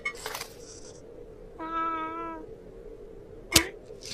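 Cartoon cat giving one short, steady meow midway, after a brief scraping scuffle at the start. Near the end comes a single sharp click, the loudest sound.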